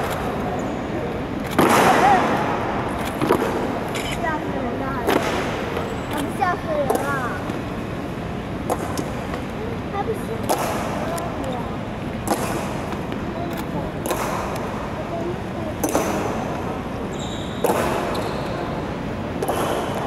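Honour guard's boot heels striking a stone floor in slow, evenly spaced ceremonial marching steps, about one every second and three-quarters, each ringing out in a large echoing hall. Low crowd chatter runs underneath.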